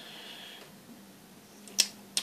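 Quiet room tone with a faint steady hum, broken near the end by one sharp click.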